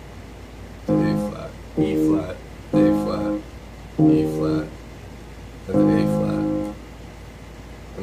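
Electronic keyboard playing five separate held notes or chords, each about half a second to a second long with short gaps between, the last one held longest.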